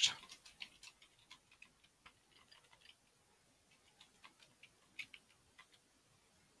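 Computer keyboard typing: faint, irregular key clicks, with a couple of louder strokes about five seconds in.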